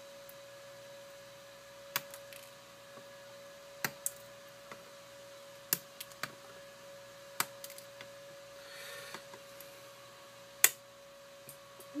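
Flush cutters snipping the protruding leads of newly soldered replacement capacitors on a circuit board: about half a dozen sharp snips a second or two apart, the loudest near the end.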